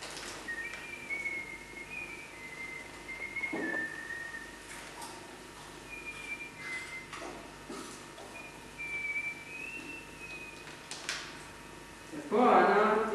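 Someone whistling a slow tune in three short phrases of held, stepping notes, with a few small knocks and clicks in between.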